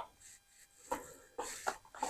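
A few faint scrapes and rustles of a utensil and a plastic tub of homemade tartar sauce being handled, about a second in and again near the end.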